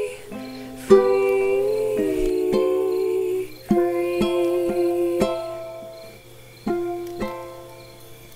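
Ukulele chords plucked and strummed at a slow pace, with a soft sung voice holding long notes over them; the playing thins out and fades near the end.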